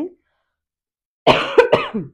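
A woman coughing, a short burst of coughs starting a little over a second in after a moment's silence.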